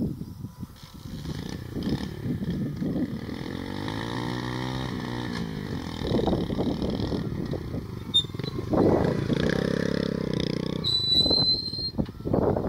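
Small motorcycle engine revving up and back down, then running with rough, uneven surges of throttle.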